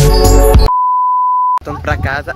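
Background music cuts off abruptly, followed by a single steady electronic beep tone lasting about a second, the kind edited into a video. It ends sharply and a young man's voice starts talking.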